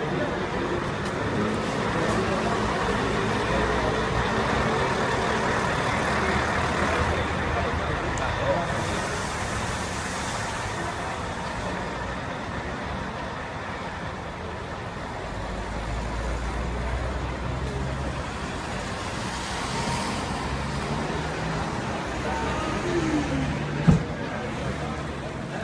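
Steady traffic and motor vehicle engine noise, with low rumbling that swells and fades as vehicles pass, and scattered voices of people nearby.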